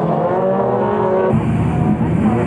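Rallycross Supercar engines running hard as the cars pass, their pitch held high and rising slightly. About a second and a half in, the sound cuts abruptly to the lower, denser engine noise of two-wheel-drive Ford Escorts waiting on a start line.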